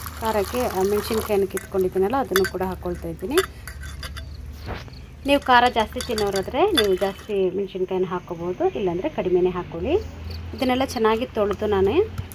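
Water poured into a steel bowl of green chillies, garlic cloves and ginger, then the pieces rubbed and swished by hand in the water, with light clinks against the steel.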